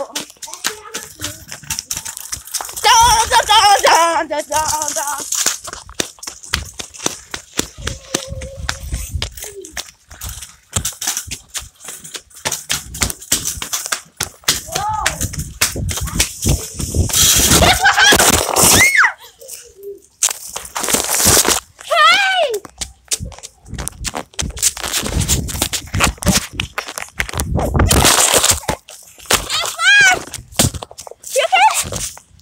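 Kick scooter and a handheld phone moving fast along a concrete walkway: a steady run of clicks and knocks, with several loud gusts of wind on the microphone and short bursts of voices calling out.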